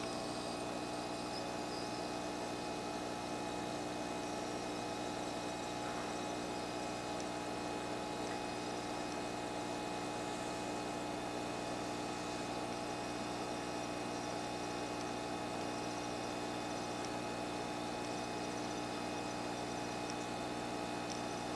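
A steady hum of several fixed tones over an even hiss, unchanging throughout.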